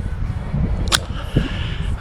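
Wind buffeting and handling noise on a handheld camera's microphone, a low uneven rumble, with a single sharp click about a second in.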